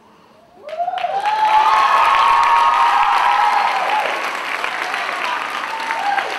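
Audience applause and high-pitched whooping cheers start suddenly about half a second in and carry on loudly, easing a little near the end.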